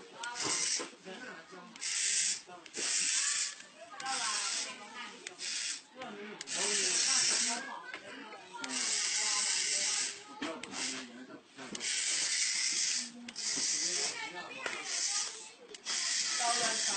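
A dozen or so bursts of hissing, each from half a second to about a second and a half long, with short gaps between them, and voices underneath.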